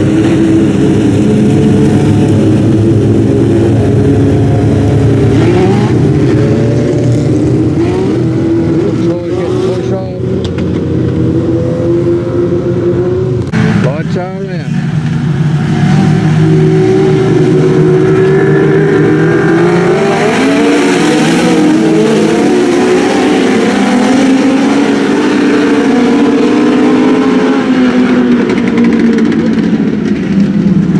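A pack of speedway race cars' engines running together, their pitch rising and falling as they circle the dirt track. From about 16 seconds in the engines get louder and higher as the field picks up speed.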